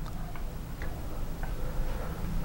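Faint clicks of remote-control buttons being pressed, about three in two seconds, over a low steady hum.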